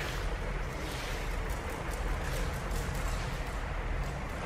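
Steady background noise, a low rumble with hiss and no clear events.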